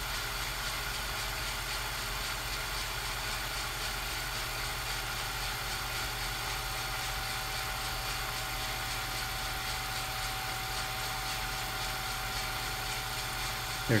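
Steady hiss with a low hum and a faint steady tone, unchanging and without any distinct events: background noise under silent film footage.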